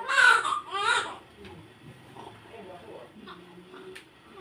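Newborn baby crying: two short, high-pitched wails in the first second or so, then quieter.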